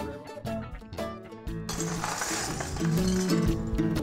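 Background music with stepped notes throughout. Midway, a short noisy rattle and clink of broken window glass being swept up with a broom on asphalt.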